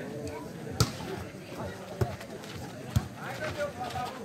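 A volleyball being struck by hand three times during a rally, sharp slaps about a second apart, the first the loudest, over a background of people's voices.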